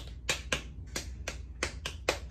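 A quick, regular run of sharp clicks or snaps, about three or four a second.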